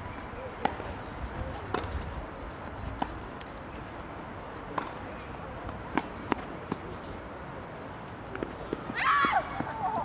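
Tennis rally: sharp pocks of rackets hitting the ball, about a second apart, over a steady outdoor background. Near the end a voice calls out briefly.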